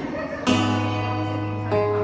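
Acoustic guitar strummed: a chord rings out about half a second in, and a second strum changes the chord near the end.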